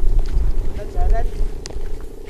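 A kite's hummer (sendaren) droning in one steady tone as the kite flies, with wind buffeting the microphone.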